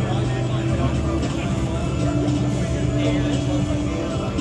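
Electric hair clippers buzzing against a man's head, picked up by a close microphone and amplified, over a steady low drone.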